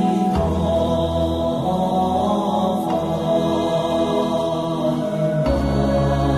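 Buddhist devotional chant music: slow chanting over a low sustained drone that comes in shortly after the start and shifts in pitch near the end.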